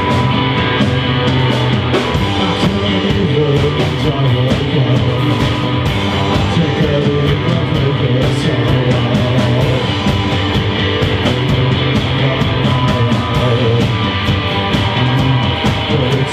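Live punk rock band playing loud and steady: electric guitars through amplifiers over a drum kit keeping a fast, even beat with cymbal strokes.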